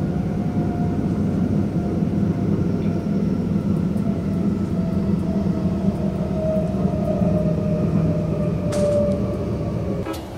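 A passenger train running along the tracks, heard from inside the carriage: a steady low rumble with a faint whine that wavers slightly in pitch.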